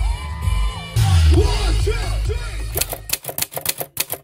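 Loud live concert music with deep bass and voices over it, heard through a phone recording in the crowd. About three seconds in the music stops and a rapid, even run of typewriter-key clicks, a typing sound effect, begins at about five clicks a second.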